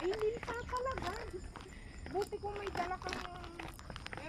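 Footsteps on stone trail steps going downhill, a run of light scuffs and taps, with a person talking quietly in the background.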